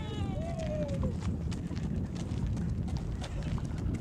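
Footsteps of several people walking on asphalt, heard as irregular light clicks and scuffs over a low rumble. A high call falls in pitch during about the first second.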